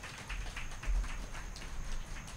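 A small audience clapping, many irregular claps close together, with a low bump about a second in.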